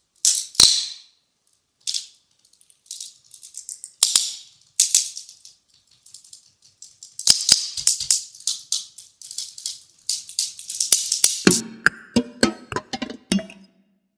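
Bundles of thin dry sticks rattling and clattering against each other in irregular bursts of crisp, high-pitched rustling and clicks. In the last couple of seconds this turns into quicker, fuller wooden knocks.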